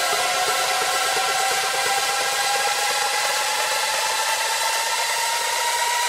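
Electronic house music breakdown: a steady white-noise hiss with a slowly rising tone over several held tones, the kick and bass dropped out, building up to the drop that follows.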